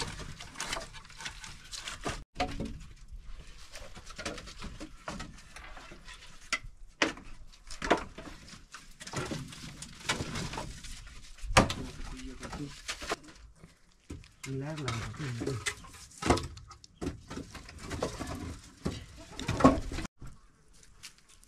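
Split firewood sticks knocking and clattering against one another as they are picked up and stacked by hand, with a string of irregular sharp wooden knocks.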